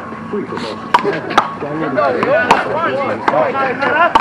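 Sharp smacks of a small rubber handball struck by bare hands and bouncing off the concrete wall and court during a rally. There are three: two close together about a second in, and another about a second later.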